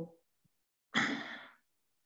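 A man's audible breath into the microphone about a second in, lasting about half a second and fading out.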